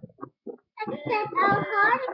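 A child's voice singing a short phrase with sustained, wavering notes, beginning about a second in after a few brief vocal sounds.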